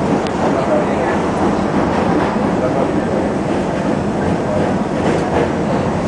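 R-68 subway train running over a steel bridge, heard from inside the front car: a loud, steady rumble of wheels and motors on the rails, with occasional faint clicks.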